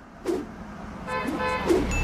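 A steady horn-like tone, held for about a second, starting about a second in.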